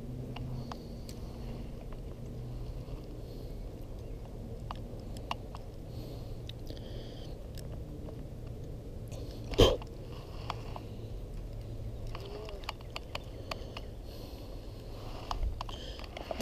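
Soft handling noises from hands holding a hooked largemouth bass that has swallowed the lure: scattered small clicks and rustles over a low steady hum, with one louder thump about ten seconds in.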